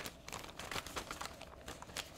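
Plastic mailing envelope and packaging rustling and crinkling as items are slid inside, a series of light, short crinkles.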